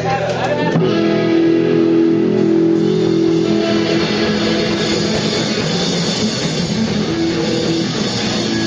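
A small rock band playing live: electric bass, electric guitar and drum kit. Held guitar notes ring over the bass, and the sound grows fuller and denser about three seconds in.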